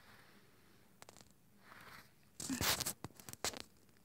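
A Boston terrier sniffing and snuffling close by, with a few light clicks and scrapes. One louder half-second snuffle comes about two and a half seconds in.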